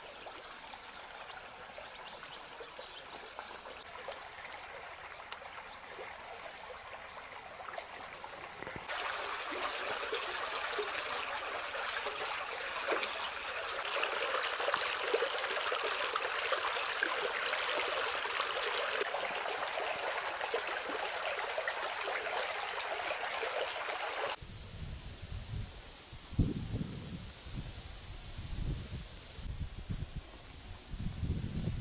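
Stream water running and trickling over rocks as a steady rushing sound, which grows louder and fuller about nine seconds in. About twenty-four seconds in it cuts to a quieter scene with irregular low rumbles.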